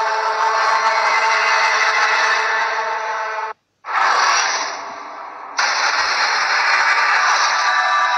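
Dramatic TV-serial background score: a sustained held chord that cuts out to silence for a moment about three and a half seconds in, comes back as a noisy swell that fades, then returns loud and dense just before six seconds.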